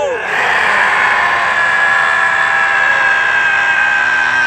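One long, steady vocal cry held on a single high note without a break, as in a laughter-yoga breathing and voicing exercise done with the tongue stuck out.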